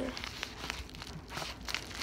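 Orange scissors cutting into a plastic bubble mailer while it is handled, the plastic crinkling in many short, irregular clicks.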